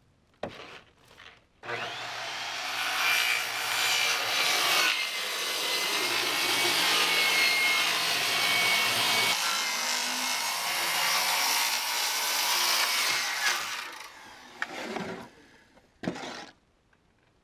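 Corded circular saw cutting a sheet of plywood in one long continuous cut of about twelve seconds, starting about two seconds in and stopping near the end. A few short knocks follow as the saw is lifted off the sheet.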